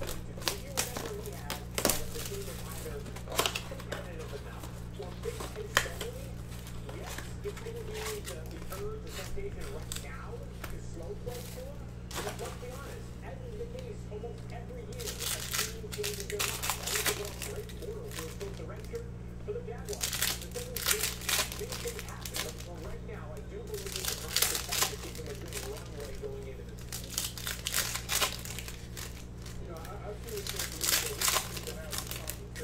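Foil trading-card packs and the wrapping of a Panini Prizm basketball blaster box crinkling and tearing as they are handled and ripped open, in irregular spurts that grow busier in the second half, over a steady low hum.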